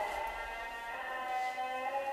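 A few steady, even tones held at once at different pitches, humming on without change under the room's quiet.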